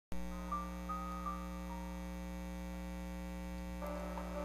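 A steady, low humming drone of held tones begins abruptly at the very start, with a few short, soft higher notes in the first two seconds: the opening of a quiet background music bed.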